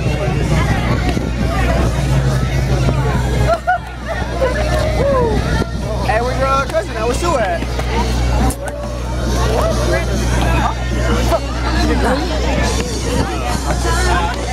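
Crowd chatter from many voices over music from a sound system with a steady, deep bass line.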